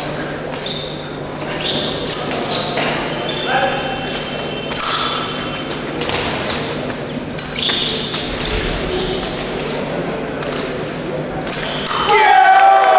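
Épée bout footwork: irregular stamps and thuds of fencers' feet on the piste, with short metallic pings and clinks of blades, over a general murmur of voices in a large hall.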